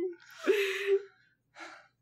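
A person's breathy, gasping laugh with a held pitch, followed by a short faint breath.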